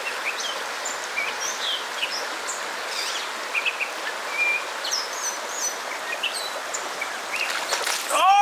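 Steady rush of fast-flowing river water, with many short, high bird chirps scattered throughout.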